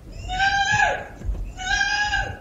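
A woman screaming in distress: two long, high-pitched cries, each falling in pitch as it breaks off.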